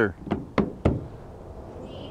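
Three quick knocks in the first second, a hand patting or tapping the panel of a folded camping table.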